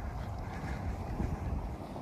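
Low, irregular rumble of wind buffeting the microphone while riding a bicycle over a soft sandy trail.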